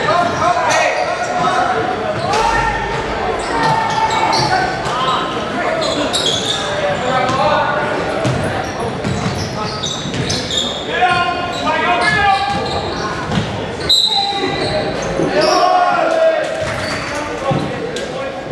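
Basketball dribbling and bouncing on a hardwood gym floor during live play, with many short knocks, under overlapping shouts and talk from players and spectators echoing in a large gym.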